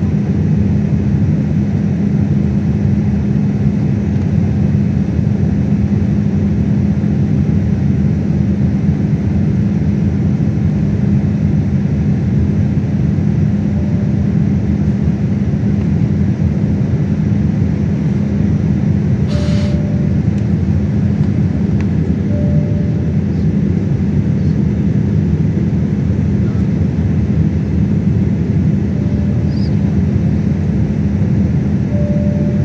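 Steady cabin noise of a jet airliner in flight, heard inside the cabin: a loud, even drone from the turbofan engines and rushing air, with a steady low hum running under it.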